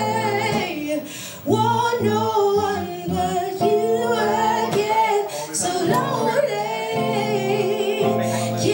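A woman singing a slow live song with long, bending held notes, over acoustic guitar accompaniment.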